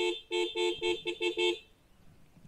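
Motorcycle horn tooted in a rapid series of about six short beeps that stop about a second and a half in, sounding to have someone open the gate.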